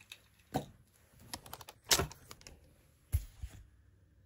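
Handling noise as the recording camera is grabbed and taken down: a series of sharp clicks and knocks, the loudest about two seconds in, with a duller knock near the end.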